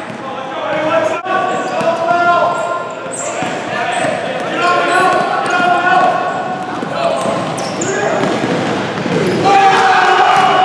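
A basketball bouncing on a hardwood gym floor during a game, with players' voices and shouts echoing in a large gym.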